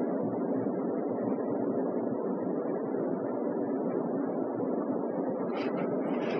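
Steady, even background noise of the lecture hall picked up through the microphone and sound system, with no speech.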